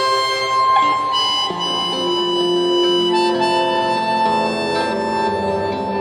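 Harmonica playing a slow melody of long held notes, each lasting a second or more, over nylon-string classical guitar accompaniment.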